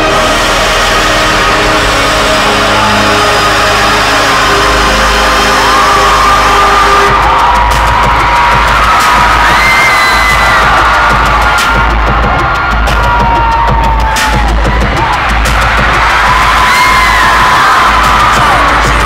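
Arena concert music over a loud PA with heavy bass, and a crowd screaming and cheering; the high screams rise over the music from about six seconds in.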